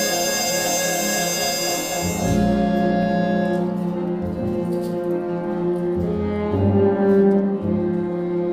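High school jazz big band playing live: a held chord with bright brass overtones whose top end drops away about two seconds in, leaving softer sustained lower notes.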